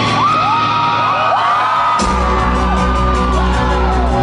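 Live rock band opening a song: high notes slide and glide over a sustained backing, then about two seconds in the full band comes crashing in with a hit, heavy bass and drums.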